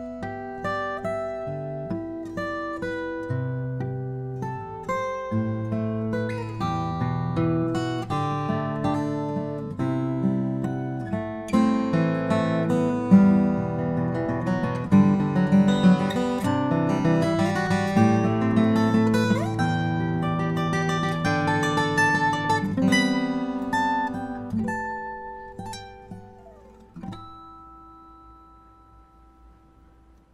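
Furch Yellow Deluxe Gc-SR steel-string acoustic guitar (grand auditorium, Sitka spruce top, Indian rosewood back and sides) played fingerstyle: a melody over an accompaniment, with notes left ringing to show the guitar's sustain. The playing grows louder through the middle, then thins out, and the last notes ring away and fade near the end.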